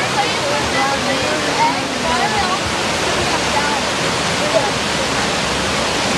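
Steady loud rush of a cascading waterfall tumbling over rock ledges, with faint voices underneath.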